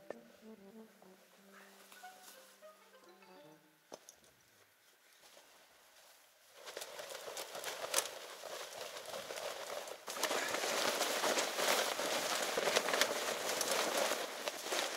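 Soft background music at first, then, from about six and a half seconds, the nylon fabric of a wet tent rustling and crackling as it is shaken out, getting louder from about ten seconds.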